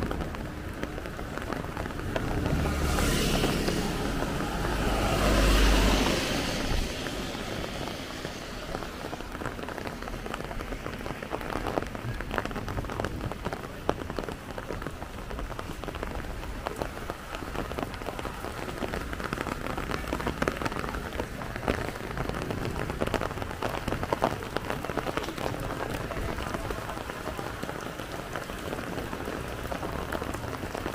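Steady rain falling on a wet street, with many small drop ticks. A louder rushing swell with a deep rumble rises and falls between about two and seven seconds in.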